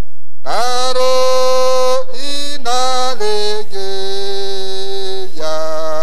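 A single voice singing a slow, chant-like hymn in long held notes, the pitch stepping down from note to note.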